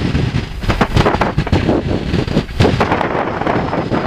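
Heavy wind buffeting the microphone over the rumble of a small biplane landing, its engine at low power. The noise is irregular and gusty throughout.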